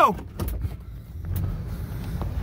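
Low steady rumble of an idling van heard from inside the cab, with a sharp knock about half a second in and a few lighter clicks and bumps as a passenger climbs out through the open door.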